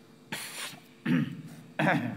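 A man clearing his throat and coughing: three short, sharp bursts in quick succession.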